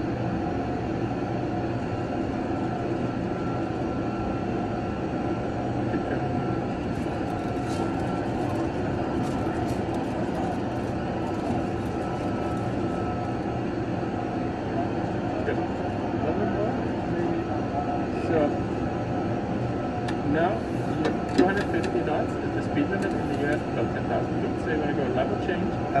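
Steady rumble of an airliner flight simulator's cockpit sound, the simulated engine and airflow noise of a climb, with a faint steady tone, scattered small clicks and low talk in the background.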